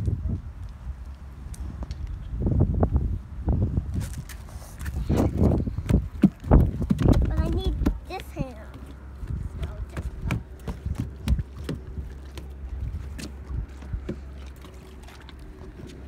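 Footsteps crunching over gravel and then onto wooden dock boards, with a steady low rumble of wind and handling on the phone microphone. A child's voice is faintly heard about halfway through.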